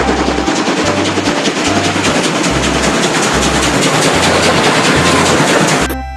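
Steam locomotive running at speed, its exhaust chuffing in a rapid, even beat. A low music bass line runs beneath it, and the locomotive sound cuts off just before the end.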